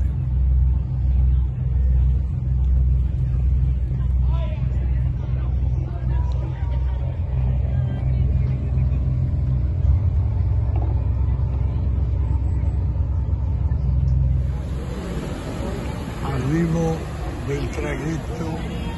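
A deep, continuous rumble, pulsing about twice a second for the first several seconds and then steady. Near the end the sound changes abruptly: a passenger car ferry's propellers are churning the water as it manoeuvres, with a few voices.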